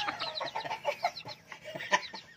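A brood of young gamefowl chicks peeping: many short, falling chirps overlapping, thinning out after about a second and a half.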